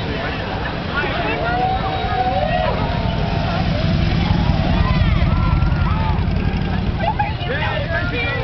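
Escort motorcycles passing close on a wet road, their engines making a low rumble that swells to its loudest about halfway through, while roadside spectators' voices call out over it.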